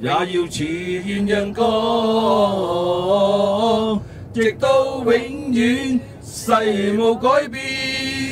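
A man singing into a handheld microphone: a slow Cantonese-song line with long held notes and little or no accompaniment.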